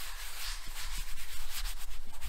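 Hands rubbing and smoothing across a floured round of pizza dough on a wooden board: a steady, dry brushing hiss, with a few separate strokes in the second half.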